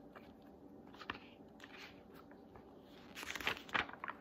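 A picture book being handled and its cover opened: a faint rustle about a second in, then a short burst of paper rustling and crinkling near the end.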